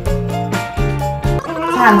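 Background music, then about one and a half seconds in a newborn baby starts crying loudly, with a wavering cry, cold in her bath.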